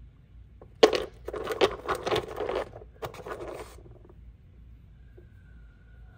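Rough agate nodules knocking and scraping against one another in a plastic tub as one is put back and another picked out. A sharp knock about a second in starts roughly three seconds of clattering that stops before the end.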